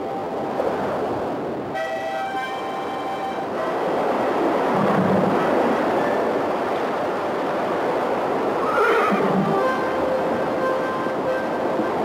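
Horses neighing a couple of times, the clearest about nine seconds in, over a steady noisy wash and background music.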